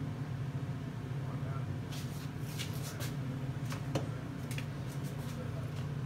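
A steady low hum, and over it a run of small sharp clicks and taps from about two seconds in until shortly before the end, as a squeeze bottle of gold airbrush food colour is handled and opened over the pot.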